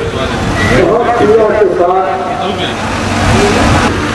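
A man talking over a public-address loudspeaker, the amplified voice loud and echoing.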